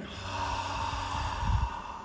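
A person's long, breathy exhale, cued as a forward-bending exhale with the navel drawn in during a yoga breathing exercise.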